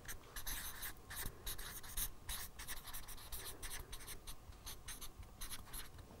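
A marker pen writing on flip-chart paper: a quick run of short scratchy strokes that stop shortly before the end.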